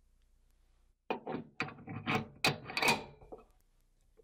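CNC-machined 6061 aluminium toolhead sliding into the slots of a Dillon 550B reloading press frame: a run of scraping, clicking metal-on-metal rubs that starts about a second in and lasts a little over two seconds.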